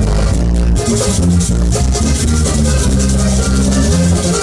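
Live band playing an instrumental passage led by a diatonic button accordion, over a walking bass line and steady percussion.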